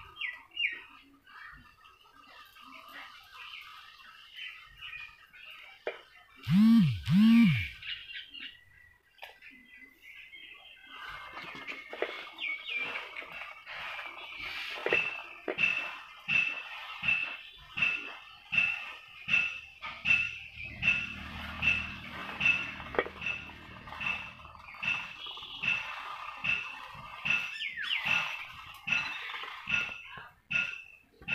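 Birds chirping, one of them repeating a short high note about once a second through the second half. Two loud calls that rise and fall in pitch, a little past six seconds in, are the loudest sound.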